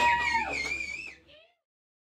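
A live punk rock band's last sustained notes, amplified guitar among them, ringing out and fading; the sound stops about a second and a half in.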